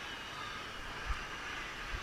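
Steady low background rumble and hiss, with one brief low thump about a second in.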